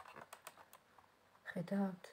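A quick run of light clicks and taps from tarot cards being handled on a tabletop, then a short hummed "hmm" from a woman near the end.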